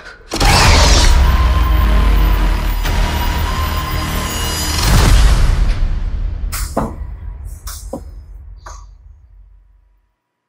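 Horror film trailer soundtrack: a sudden loud hit opens a dense, sustained swell of dissonant score and sound design with a wavering high tone. It swells again about halfway through, then fades under a few sharp separate stinger hits and cuts to silence at the title card.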